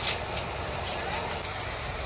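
Car engine and vehicle noise from a video clip's soundtrack, heard over a hall's loudspeakers, with a few short clicks.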